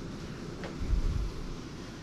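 Low microphone rumble and handling noise from a handheld camera being carried and turned, over a steady background hum, with a low bump about a second in.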